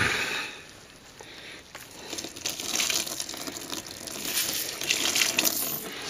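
Water splashing and trickling into a plastic basin of soapy cleaning solution as a gloved hand lifts a brass clock chain out of it. A brief splash at the start, then a steady trickling hiss that builds from about two seconds in.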